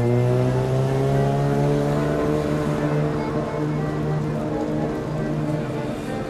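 Accordion playing on a city street while a motor vehicle accelerates past, its engine pitch rising over the first two seconds, loudest near the start.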